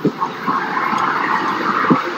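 Steady road traffic noise from a busy city street, swelling about half a second in and holding.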